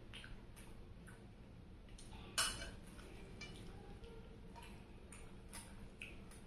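Quiet close-up eating sounds of a person eating rice by hand from a steel plate: scattered small clicks from chewing and from fingers on the plate, with one sharper click a little over two seconds in.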